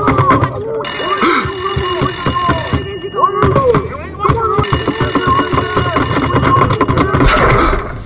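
An electric telephone bell ringing twice in long rings, the first about two seconds and the second about three, with voices underneath.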